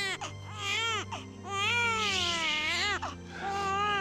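A baby crying in a few wails that rise and fall in pitch, the longest lasting about a second and a half in the middle.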